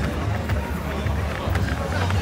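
Outdoor festival ambience while walking: steady bass from music playing in the distance, background chatter of a crowd, and the walker's footsteps.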